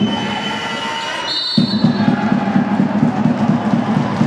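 Basketball game in a sports hall: shoes squeak on the court, and a short, shrill referee's whistle blast sounds about a second and a half in as play stops. After it comes rhythmic crowd noise with a beat.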